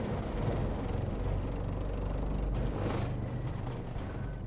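Motorhome rolling off a ferry's ramp, heard from inside the cab: a steady low rumble of the vehicle and the ramp under its wheels.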